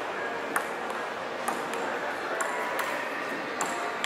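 Table tennis rally: the ball clicking sharply off the paddles and table, about one hit a second in an uneven rhythm, over the steady hubbub of a public space.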